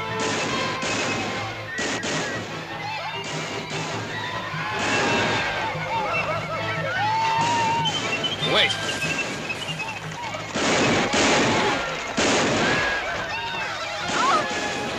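Scattered gunshots and men yelling, under dramatic film music.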